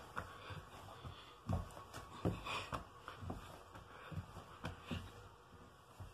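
Soft, irregular thumps of socked feet landing on a hardwood floor, about twice a second, during a plank-position exercise such as mountain climbers.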